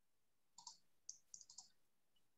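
Near silence broken by a few faint, quick clicks: a pair about half a second in, then a small cluster a second or so in.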